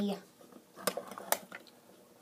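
A few sharp clicks from a hand-held can opener being fitted onto a tin can, the two loudest about half a second apart in the middle.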